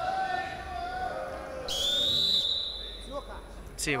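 Referee's whistle: one sharp, high blast of about three-quarters of a second, a bit under two seconds in, halting the wrestling bout.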